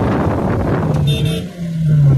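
Vehicle engine running with a steady low drone that sinks slightly in pitch near the end, after a second of rough, noisy sound.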